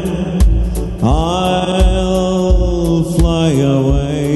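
A man singing a worship song into a microphone over instrumental accompaniment with a steady drum beat. About a second in he holds one long note until past three seconds, then his voice drops.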